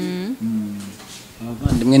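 A person's voice making drawn-out humming 'mmm' sounds on steady pitches, then speech starting again near the end.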